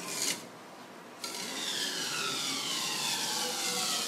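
Mimaki JV33 print-head carriage pushed by hand along its rail with the power off. From about a second in there is a steady rubbing whir, with a pitch that falls slowly as the carriage travels.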